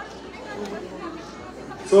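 Faint chatter of people talking in a large hall during a pause in the microphone speech. A man's amplified voice starts again right at the end.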